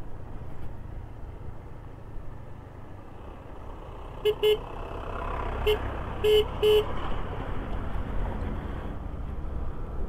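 Scooter riding over a rough road, with a steady low engine and road rumble, cut by five short horn toots at one pitch, some in pairs, between about four and seven seconds in.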